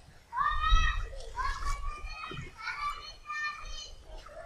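Children's high-pitched voices calling out in a run of drawn-out shouts, with no clear words.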